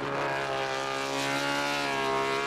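Honda RC211V MotoGP racing motorcycle's V5 four-stroke engine running on track: a steady engine note whose pitch dips slightly and then rises again.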